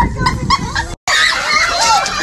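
Excited children shouting and squealing around a piñata, with a few short knocks in the first half; the sound cuts out for an instant about halfway, then a crowd of children's voices shrieks as the piñata bursts and candy spills.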